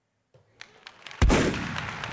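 A single sudden loud bang about a second in, dying away over most of a second, with a few faint clicks before it.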